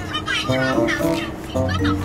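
Background music with a child's voice over it.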